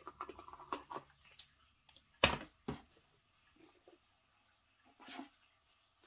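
Light clicks and taps of a spice jar with a green plastic cap being handled, with two sharper knocks a little over two seconds in, half a second apart.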